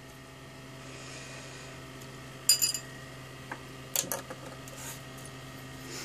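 ZVS driver and flyback transformer humming steadily once powered up, with a few short, sharp clicks over the hum. The loudest click comes about two and a half seconds in.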